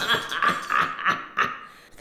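A cartoon character laughing: a run of short laugh bursts that fade away near the end.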